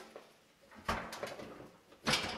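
Hinged stainless steel top of an old Kenmore electric cooktop being lowered back down: a metal clunk about a second in, followed by a brief rattle.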